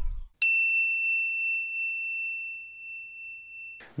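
A single bright bell-like ding: one sharp strike that rings on as one clear high tone, slowly fading for about three seconds, then cuts off suddenly just before the end.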